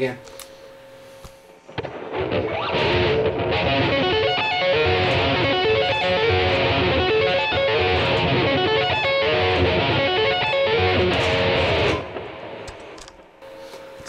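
Schecter eight-string electric guitar, played through a Boss GT-10 processor, sweep-picking a five-octave F-sharp arpeggio in a fast, continuous run of notes, without the tapped top note. The run starts about two seconds in and stops abruptly about two seconds before the end.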